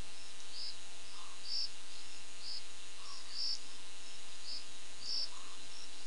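Crickets chirping: short high chirps about once a second, unevenly spaced, over a steady hiss and a faint hum.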